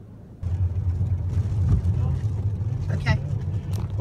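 A car driving in rain, heard from inside the cabin: a steady low rumble of engine and road with a hiss of rain on the windshield. It starts suddenly about half a second in.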